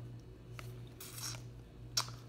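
Trading cards sliding against one another as a stack is handled: one brief rustle about a second in and a sharp click near the end. A steady low hum runs underneath.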